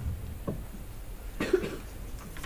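A person coughs once, briefly, about one and a half seconds in.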